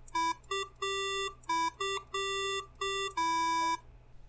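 Buzzy square-wave beeps from a micro:bit played through a headphone speaker. Two notes, middle E and middle G, alternate as the buttons are pressed and released, some short and some held, in a simple two-note tune.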